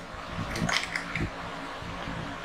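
A tarot deck being shuffled by hand: soft papery rustling with a few light flicks and taps, busiest in the first second.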